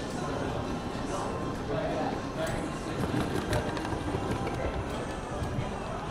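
Wheeled suitcases rolling over a hard floor, a steady low rumble, with indistinct voices in the background.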